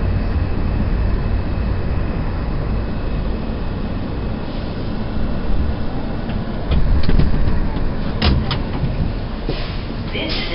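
New York City Subway R160 car rumbling as it slows into a station and stops. Near the end come a few sharp metallic clicks and squeaks as it comes to rest.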